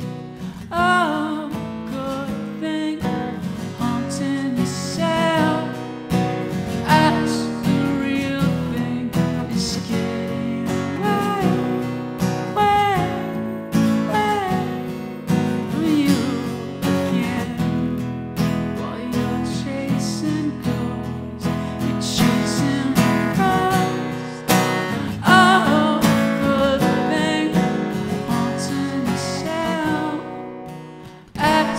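Live solo acoustic performance: a steel-string acoustic guitar strummed steadily while a man sings.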